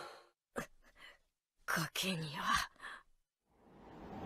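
A woman's short, strained vocal sound about two seconds in: a breathy burst followed by a wavering sigh. A brief faint click comes before it, and the rest is nearly quiet.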